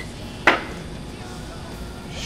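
A single sharp knock or snap about half a second in, over a steady low hum.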